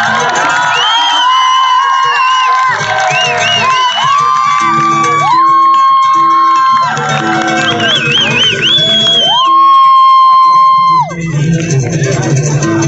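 Male singer's voice through a concert PA, singing unaccompanied, with long held notes and quick ornamented runs. Crowd noise runs faintly beneath.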